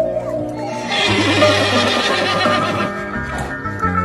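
A horse whinnying for about two seconds, starting about a second in, over background music.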